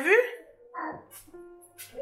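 Mostly speech: a short spoken word with a rising pitch at the start, then another brief voiced sound just under a second in, over faint steady tones.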